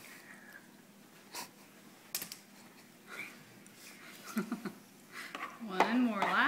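Quiet room with two faint clicks early on, then a voice making short sounds, growing louder over the last two seconds.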